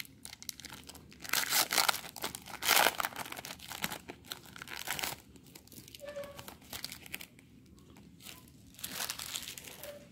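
Foil wrapper of a baseball trading-card pack crinkling and tearing as it is opened and handled. The crackle is loudest in the first few seconds, with softer bursts later.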